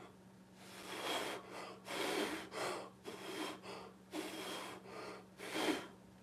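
A person blowing short breaths of air onto wet acrylic pour paint, about five separate puffs each lasting a second or less. The breath pushes the paint's edge out into wispy, billowy lacing.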